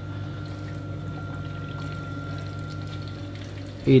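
Water running and pouring through a reef aquarium's sump and filtration equipment, over a steady low hum of its pumps. A faint thin whine sits on top and stops a little before the end.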